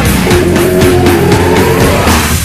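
Thrash metal recording played back from a 1995 cassette: loud distorted guitars and bass over a steady drum beat, with a held note gliding in pitch.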